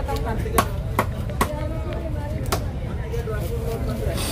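Cleaver chopping through fresh tuna flesh onto a thick wooden chopping block: four sharp chops, three about half a second apart, then one more about a second later.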